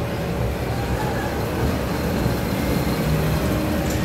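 Children's ride-on train running with a steady low rumble and a faint hum.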